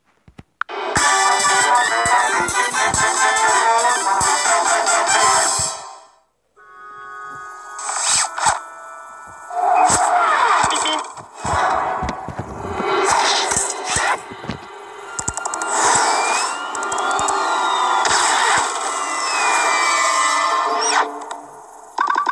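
Cartoon soundtrack: fast, busy music with sharp hits that stops suddenly about six seconds in. It then returns with loud accents and sliding tones.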